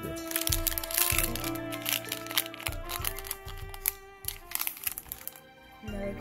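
Foil wrapper of a Pokémon booster pack crinkling and crackling as it is opened and the cards are pulled out, over steady background music.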